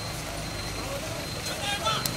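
Road traffic: vehicle engines running steadily in a low hum, with people's voices around them, a little louder near the end.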